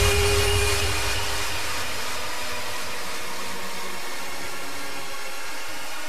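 Beatless breakdown in a hardcore dance track. The kick and bass fade out in the first second or two, leaving a steady wash of noise with faint held tones underneath.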